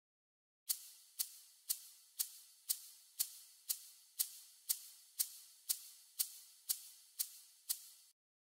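Egg shaker played alone in a steady beat, about two shakes a second, fifteen in all. Each shake is a crisp, sharp attack fading quickly into a short hiss. It starts a little under a second in.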